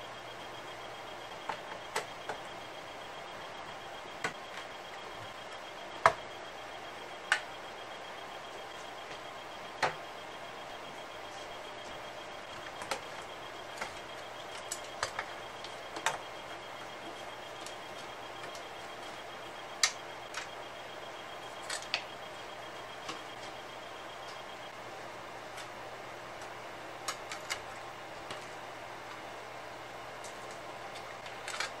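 Scattered light clicks and clacks of hands unplugging connectors and lifting circuit boards and ribbon cables out of an opened Roland D-70 synthesizer's metal chassis, irregular and a few seconds apart, over a steady hiss and low hum. A faint high whine in the background stops about two-thirds of the way through.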